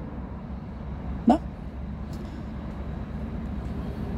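Road traffic running past as a steady low rumble, with a short rising voice sound a little over a second in.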